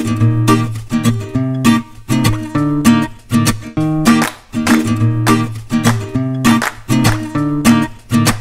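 Music: rhythmic strummed acoustic guitar chords.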